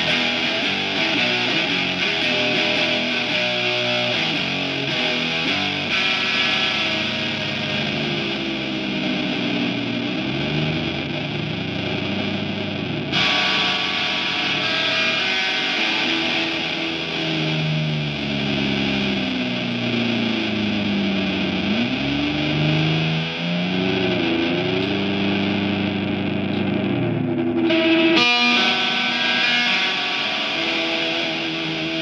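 Squier Bullet Stratocaster electric guitar played loud and heavily distorted through an effects pedalboard and a Randall speaker cabinet, a harsh continuous wash of noise and feedback. In the second half, long held notes slide and swoop up and down in pitch.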